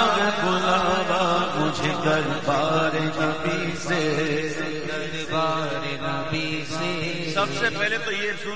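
Male voices chanting a naat, an Urdu devotional poem, in a long melismatic line over a steady low drone.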